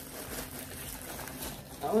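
Rustling of a fabric tote bag and plastic hair-extension packaging being handled, a soft irregular crinkle with no clear strokes.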